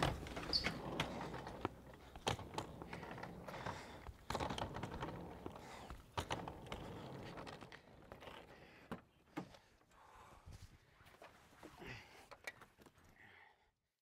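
Faint, scattered knocks and thunks of camera gear and bags being loaded into a car, with its doors being handled. The knocks thin out in the second half and drop away to near silence just before the end.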